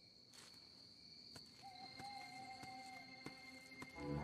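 Near silence: faint night-forest ambience with a steady high insect trill. A soft held note from the film score comes in a little over a second in and fades before the end, with a few faint clicks.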